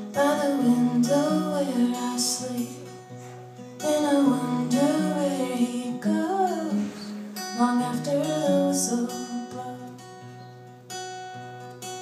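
Live acoustic song: a woman sings phrases of melody over a strummed acoustic guitar, with an electric bass guitar playing low notes that change in steps beneath.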